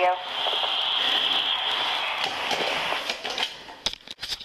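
Steady rushing, scraping noise on a body-worn camera's microphone, as of clothing or a hand rubbing against it, for about three seconds, then quieter with a few sharp clicks near the end.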